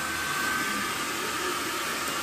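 Steady rushing noise of a small electric blower running, with a faint steady whine.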